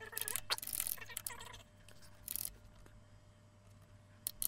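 Computer keyboard typing in a few short spurts, mostly in the first second and a half and once more a little after two seconds, over a faint low hum.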